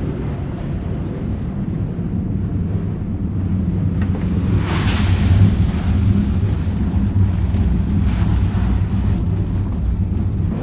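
Wind-driven millstones and gearing of a tower windmill running, a steady low rumble as the stones grind wheat. A rushing swell of noise comes about halfway through, and a weaker one near the end.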